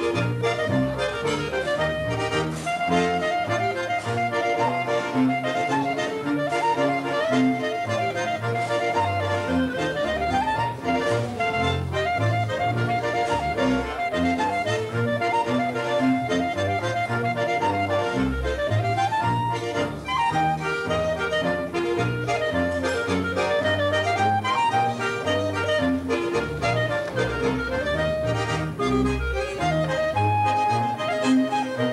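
Swiss Ländler folk music: a Schwyzerörgeli (diatonic button accordion) playing a lively dance tune over a steady, alternating bass, with quick melodic runs.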